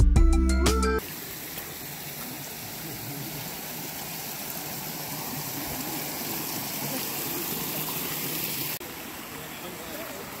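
Guitar music ends about a second in, giving way to a small mountain creek running steadily over rocks and a low cascade. Near the end the sound steps down a little to a quieter trickling stream.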